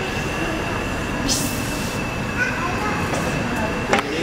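Three-cylinder steam pumping engine running smoothly and steadily, with a brief hiss about a second in.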